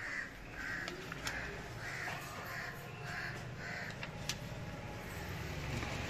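A bird calling repeatedly: about seven short calls in quick succession over the first four seconds, with a few light clicks among them.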